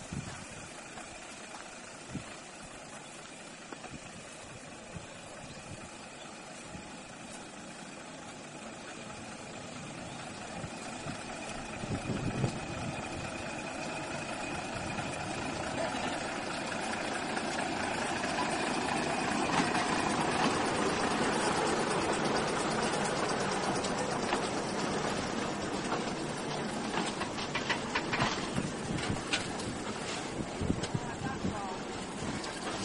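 The Gulflander diesel railmotor approaching and passing close by, its engine and running gear growing louder to a peak about twenty seconds in, then easing as the trailer car rolls past, with a few sharp clicks near the end.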